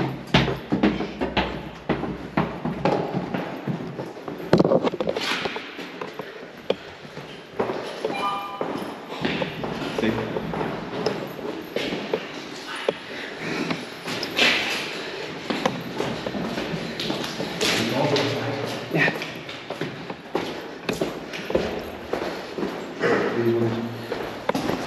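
Footsteps and scuffs on stairs and a hard corridor floor, with scattered knocks and thumps as a group moves through an empty building. A short high ping sounds about eight seconds in.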